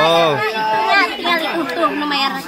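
Voices talking and chattering over one another, with no other sound standing out.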